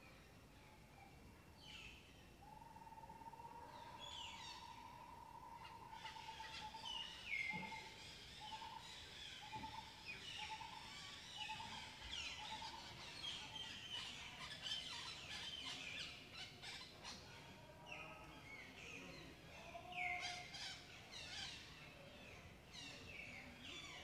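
Faint forest birdsong with several birds calling at once: one holds a long low trilled note, then repeats short notes about once a second, while others give quick falling whistles and chirps.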